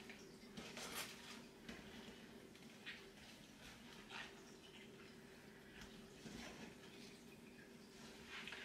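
Near silence: faint, soft handling sounds of hands folding and pressing soft potato dough over its filling on the worktop, a few light scattered noises with the clearest about a second in, over a low steady room hum.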